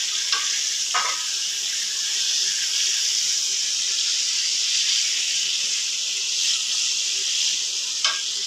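Batter-coated chicken breast fillets frying in hot oil in a wok, a steady sizzle throughout, with a brief clink about a second in.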